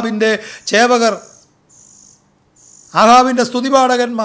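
A man's voice preaching, and in a pause of about a second and a half between phrases, a faint, high, thin insect trill sounding three times in short spells.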